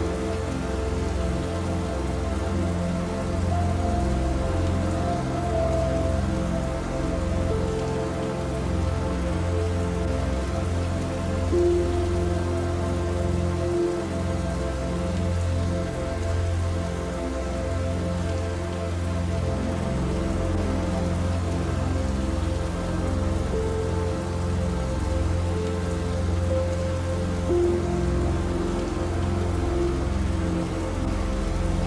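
Steady rain falling, with soft, slow music of long held notes underneath.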